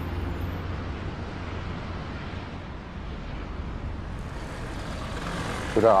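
Steady city traffic noise, an even low rumble and hiss, as background music fades out at the start. A voice begins right at the end.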